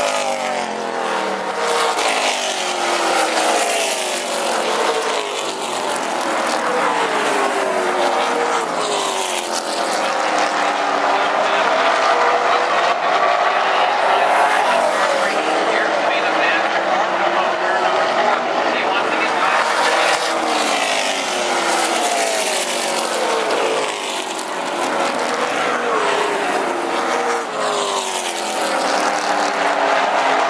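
A field of late model stock cars running at race speed, several V8 engines at once. Their pitch rises and falls over and over as cars come by and move away.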